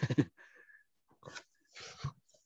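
A man's speech breaking off, followed by short breathy noises from his throat and breath, picked up by a video-call microphone.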